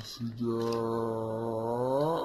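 A person's voice holding one long, low note, a hum or drawn-out vowel, for about two seconds. It stays level, then rises slightly in pitch at the end.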